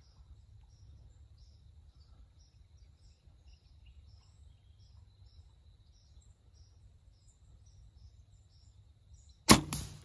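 Bow shot: about half a second before the end, a sudden loud crack of the bow releasing an arrow at a doe, followed by noise and rustling. Before it, only a faint low wind rumble with small high chirps repeating a couple of times a second.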